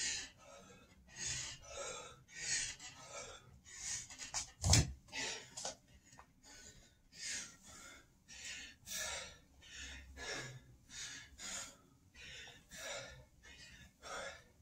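A man breathing hard and fast from exertion, with about three noisy breaths every two seconds. A single loud thump comes about five seconds in.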